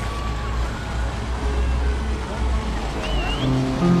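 Busy open-square ambience: a fountain jet splashing, scattered voices of passers-by, and a steady low rumble. Music comes in near the end.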